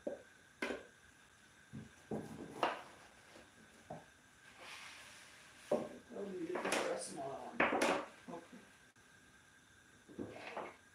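Kitchen knife cutting bell peppers on a plastic cutting board: a few separate sharp knocks of the blade against the board.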